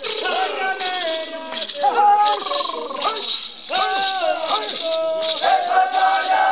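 Fulni-ô men chanting a sacred song for Mother Earth in short phrases whose pitch falls at the end, to the shaking of hand-held gourd rattles (maracas) in rhythmic bursts.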